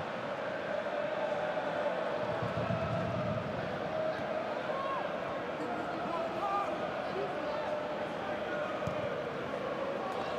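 Football stadium crowd ambience: a steady hum of many voices from the stands during live play.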